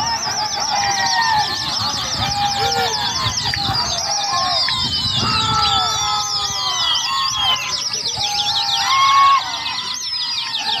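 A crowd of men whistling and calling out at a large flock of just-released pigeons: many shrill, warbling whistles overlapping with rising-and-falling shouted calls, with a louder burst just after nine seconds.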